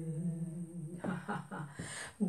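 A woman humming a slow, held low note a cappella, breaking into a few short, uneven vocal sounds in the second half.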